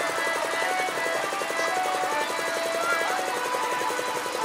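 Stationary single-cylinder diesel engine running steadily with a fast, even chug of about a dozen beats a second, with music playing underneath.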